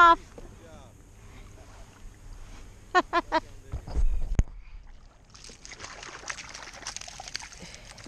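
A hooked small redfish splashing and thrashing at the water's surface beside a kayak, starting about five seconds in and going on as a crackly, spattering splash. A dull thump against the kayak comes just before it.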